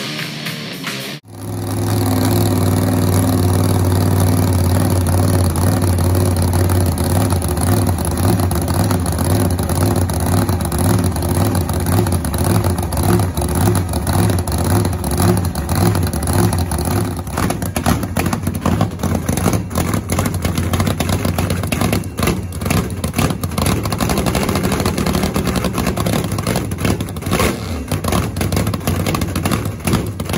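Vintage funny car's drag-racing V8 engine running loud at a steady, rumbling idle, becoming choppier and more uneven in the second half, typical of throttle blips.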